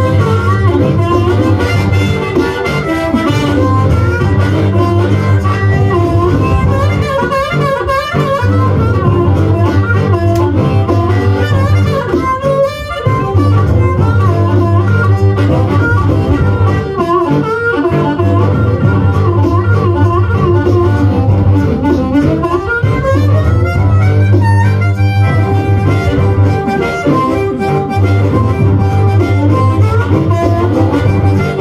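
Amplified blues harmonica cupped into a handheld microphone, playing a solo full of bent and sliding notes. Underneath it, low notes are held in repeating phrases with short breaks between them.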